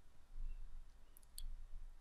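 Quiet pause with faint low room noise and a couple of small faint clicks a little past the middle.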